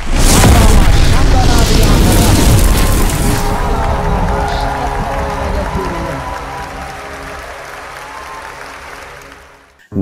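Channel intro sting: a loud explosion boom opens it, followed by sustained music tones that slowly fade out over several seconds.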